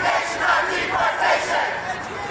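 A crowd of marchers shouting a chant together, many voices at once.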